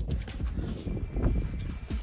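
Background music over uneven low-pitched noise.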